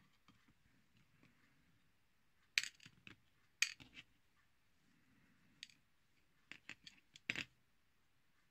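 Small metal parts of the disassembled hair-cutting shears (pivot screw and washers) clicking and clinking against a small round metal tin as they are put into it. About ten sharp clicks, scattered, with the loudest a few seconds in and near the end.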